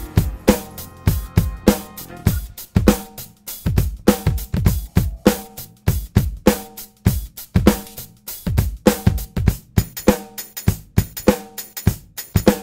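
An acoustic drum kit played with sticks in a steady groove, with bass drum, snare, hi-hat and cymbals, the strokes coming in an even rhythm.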